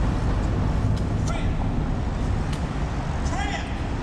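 City street ambience: a steady low rumble of traffic, with brief snatches of passing voices about a second in and again near the end.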